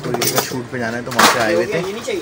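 A man's voice talking, with a short clatter of small hard objects a little past a second in.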